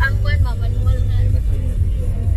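Steady low rumble of a car's engine and tyres heard from inside the moving cabin.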